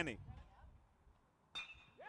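Near silence, then about one and a half seconds in a single sharp, ringing ping of a metal baseball bat striking a pitched ball for a line drive.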